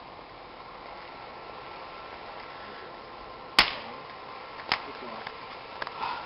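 Steady background hiss with a faint steady hum, broken by one sharp click about three and a half seconds in and a smaller click about a second later.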